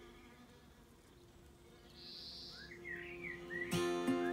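Faint outdoor garden ambience: a short high buzzing hiss about halfway through, then small chirps rising and falling in pitch. Music starts up near the end.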